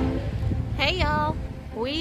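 Low, steady outdoor rumble of a line of Jeeps rolling slowly past on a sand track, with wind on the microphone. A woman's voice speaks briefly about a second in.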